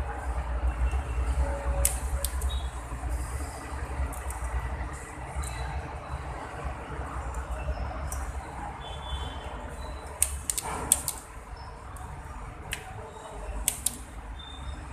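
Steady low rumble with scattered sharp clicks and ticks from hands handling network cables at a server panel, the loudest cluster of clicks about ten to eleven seconds in.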